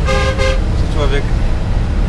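Bus horn giving one steady toot of about half a second near the start, heard from inside the cabin over the continuous low rumble of engine and road. On these mountain serpentines the driver honks to warn that he is coming round a bend.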